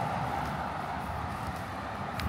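Road traffic noise from a passing vehicle, slowly fading away.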